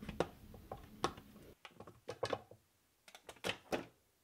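Faint clicks and light knocks of a snap-lock food storage container being opened: the plastic lid's latch tabs unclipping and the lid handled off the glass dish, about half a dozen separate clicks in all.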